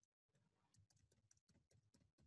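Very faint computer keyboard typing: a scattered run of soft keystroke clicks, barely above silence.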